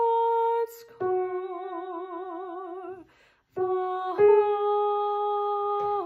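A woman singing one choral line alone in long held notes. One note between about one and three seconds in wavers with a wide vibrato, and she breaks off briefly twice to breathe.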